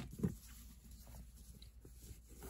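Faint rustling of a torn piece of cotton fabric being picked up and handled by hand, over a low steady room hum, with a brief voice sound at the very start.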